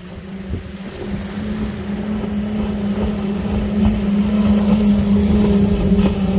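Five outboard engines on a fast center-console powerboat running at speed, a steady drone that grows louder as the boat draws near.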